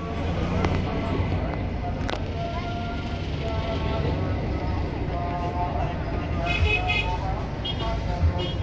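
Roadside traffic with a steady low engine rumble from buses and motorcycles close by, under background voices and faint music.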